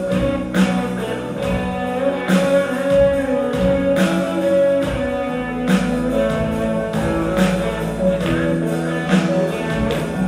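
Live band playing a song on keyboards, electric guitar and drums, with held keyboard notes and regular drum hits about once a second.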